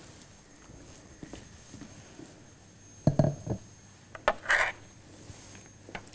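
Soft handling sounds on a kitchen counter over quiet room tone: a few low knocks about halfway through, then a click and a short scrape a moment later.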